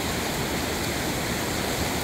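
Ocean surf washing up the beach, a steady rushing hiss with no distinct breaks.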